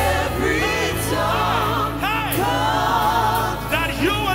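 Live gospel worship singing: a small vocal team sings long, sliding, wavering melodic lines over held low accompaniment.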